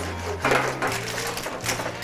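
Clams in their shells and spaghetti being stirred with metal tongs in a sauté pan, the shells clattering against the pan in short strikes. Background music with a low bass line runs underneath.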